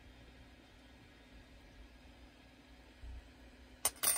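Quiet hiss from small parts being handled at a workbench, with a soft low bump about three seconds in and a single sharp click just before the end.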